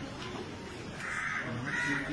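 A crow cawing twice, harsh and loud, about a second in, the two caws close together.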